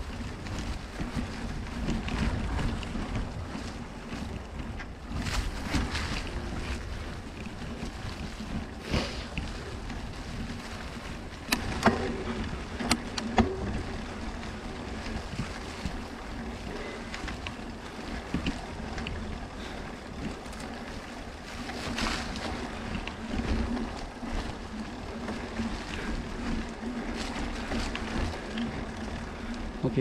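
Mountain bike riding along a leaf-covered dirt trail: wind rushing on the microphone over tyre noise on dry leaves and dirt, swelling and easing, with a few sharp knocks a little under halfway through.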